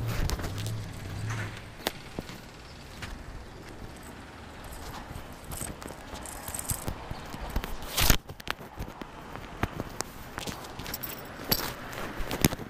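Handling noise of a rider sorting out gear at a parked scooter: scattered clicks and rustles, with one sharp knock about eight seconds in and a quick run of clicks near the end.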